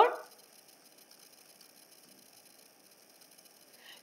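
Near silence: faint room tone, after a voice trails off at the very start.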